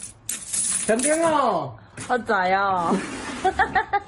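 A pile of NT$50 coins clinking and rattling inside a cut-open plastic water jug as a hand rummages through them, in two bursts: at the start and about three seconds in. A man's voice calls out between them.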